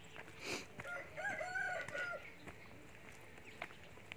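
A rooster crowing once, its call starting about a second in and lasting just over a second.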